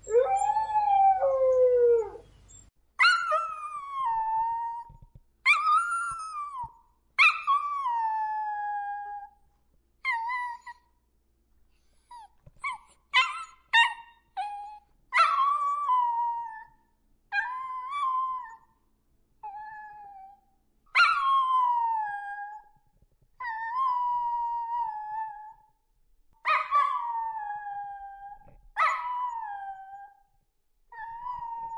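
Dogs howling. One lower howl falls in pitch over about two and a half seconds, then comes a long run of short, higher howls of a second or two each, every one sliding down in pitch, with short pauses between them.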